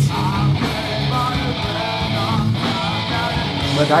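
A rock band playing live, with electric guitar over drums and bass.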